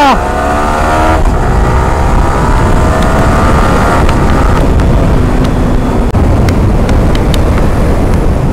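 A sport motorcycle's engine pulls with a slowly rising pitch for about four seconds and then drops away as the throttle is closed. Heavy wind rumble on the helmet microphone at highway speed runs underneath throughout.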